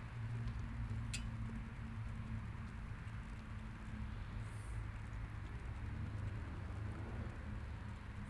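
Steady outdoor background hum with a light hiss, and a single sharp click about a second in.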